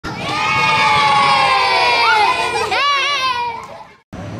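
A group of children shouting together in one long held cheer that slowly falls in pitch, then a shorter wavering shout a little under three seconds in, dying away near the end.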